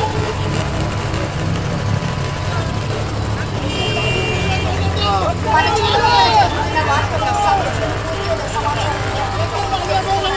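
Voices of a street crowd, many people talking and calling at once from about five seconds in, over the steady low hum of a vehicle engine running. A brief high tone sounds about four seconds in.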